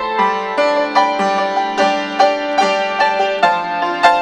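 Upright piano played with both hands: a melody of struck notes, two or three a second, over held lower chords.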